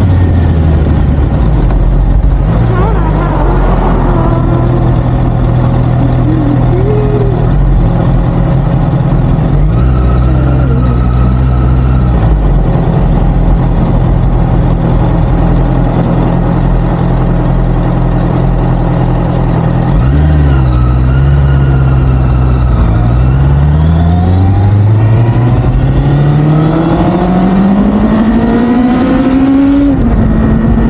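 Honda CBR650R's inline-four engine running at low, steady revs through the first two-thirds, with a brief change near the twenty-second mark. Then in the last several seconds it climbs in one long, smooth rise in pitch as the bike pulls away and accelerates.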